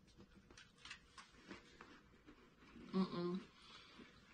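Faint crunching of crisp butter shortbread biscuits being bitten into and chewed, as a run of small scattered crackles. A short voiced 'mm' comes about three seconds in.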